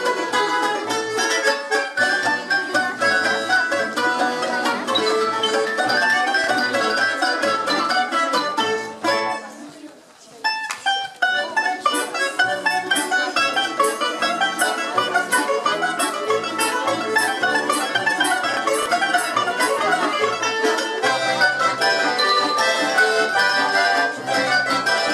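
Russian folk orchestra of domras and balalaikas playing a folk-song arrangement, with fast plucked and tremolo notes. The music drops away for about a second around ten seconds in, then the ensemble comes back in.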